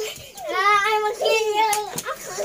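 A young child's voice singing two drawn-out, wavering notes, starting about half a second in.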